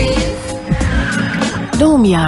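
Radio talk-show intro jingle: music layered with sound effects, with a short tone near the end that rises and then falls in pitch.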